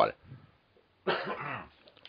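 A person's single short cough about a second in.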